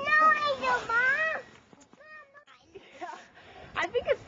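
A young child's high-pitched wordless vocalising: one sliding, wavering call lasting about a second and a half, then a brief second call about two seconds in.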